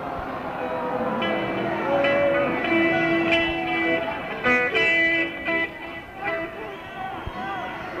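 Loose instrumental noodling by a rock band's amplified instrument between songs: a string of held notes and short phrases, with a crowd murmur underneath.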